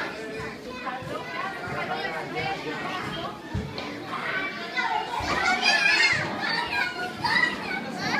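Many children's voices, mixed with adults talking, overlapping in a hall. The loudest part is high-pitched children's calling about five to six and a half seconds in.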